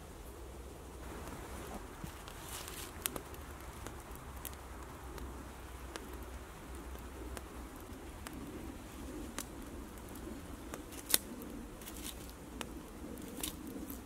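Wood campfire crackling, with scattered sharp pops over a faint steady background.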